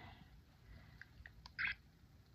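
A few faint short clicks, with one louder click about three-quarters of the way through.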